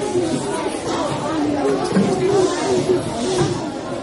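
Many children's voices chattering at once, overlapping, with no single speaker standing out.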